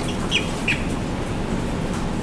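Steady low room rumble with two brief high squeaks, about a third and two-thirds of a second in, each sliding down in pitch.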